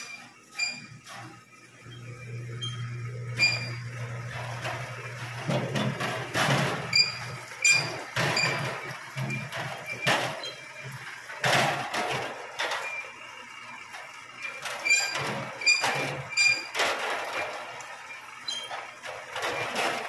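Tomato sorting machine running: many irregular knocks and clacks as tomatoes roll along the roller conveyor and drop down the chutes into plastic crates. A steady low motor hum is heard for a few seconds near the start, and short high squeaks recur throughout.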